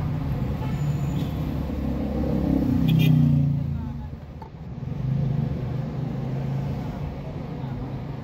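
Car engine and road noise heard from inside a car moving slowly in city traffic: a steady low hum that swells to its loudest about three seconds in, then eases off.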